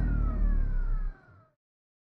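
Cinematic logo sound effect fading out: a deep bass rumble under slowly falling tones, dying away about a second and a half in, then silence.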